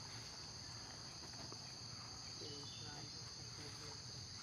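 Steady, high-pitched chorus of insects droning without a break, with a few faint short calls or voices far off late on.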